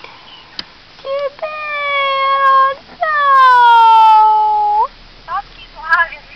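Two long, drawn-out meows, the first held on one pitch for about a second and a half, the second starting higher and sliding down before turning up briefly at the end.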